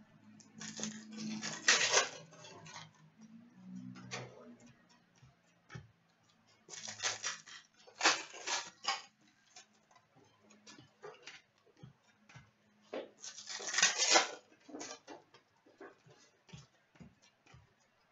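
Hockey card packs being opened and handled on a glass counter. Wrappers crinkle and tear in loud bursts every few seconds, with light clicks and taps of cards between them.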